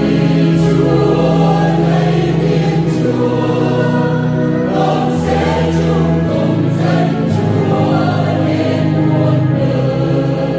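Mixed choir of men and women singing a Vietnamese Catholic psalm setting, over held low notes that change every second or two.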